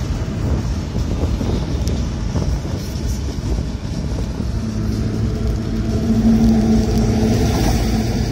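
Wind rush and road rumble in the open cockpit of a Mercedes-Benz SLK 350 roadster cruising roof-down at about 100 km/h. About halfway through, a steady low engine hum from its V6 rises above the wind.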